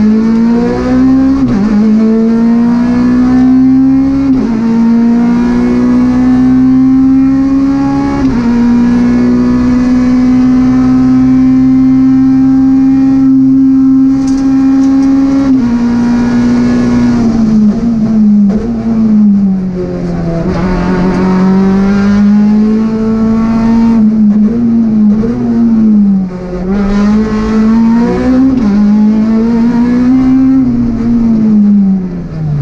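Peugeot 208 R2 rally car's four-cylinder engine, heard from inside the cabin, driven hard at high revs on a stage. It climbs through the gears with short dips at each shift for the first quarter-minute, holds a steady high note, then drops as the car slows and rises and falls repeatedly through a run of corners.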